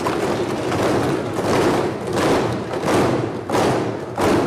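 Members of parliament thumping their desks in applause: a dense, continuous patter of many thumps that swells and eases a few times.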